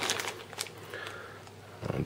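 Faint crinkling of a small clear plastic bag of sheath clips and screws as it is handled.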